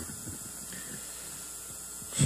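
Steady hiss and faint low mains hum, the background noise of a handheld microphone and its amplifier.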